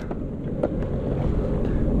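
Steady low rumble of wind on the microphone, with a faint click about two-thirds of a second in.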